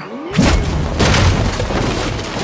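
A sudden heavy crash with a deep boom about a third of a second in, then dense clattering debris and a second impact about a second in: a film sound effect of a violent crash, with papers and objects scattering across the floor.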